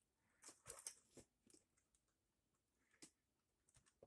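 Near silence, with a few faint clicks in the first second and one more about three seconds in, from hands handling a plastic model car body.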